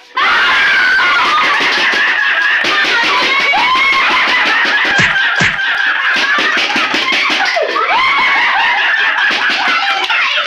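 Several people screaming and shrieking with laughter without a break. Two short thumps about half a second apart come about halfway through.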